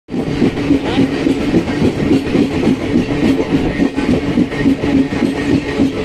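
Moving train heard from on board as it crosses a railway bridge: a continuous low rumble of wheels on rails that pulses unevenly several times a second.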